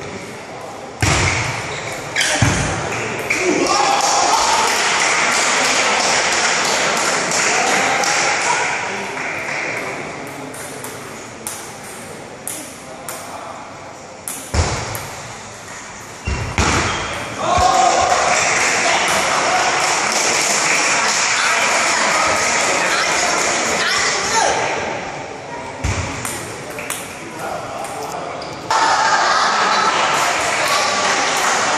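Table tennis ball clicking back and forth off bats and table in rallies. After points, loud cheering and talking from the spectators breaks out suddenly: about a second in, again past the middle, and near the end.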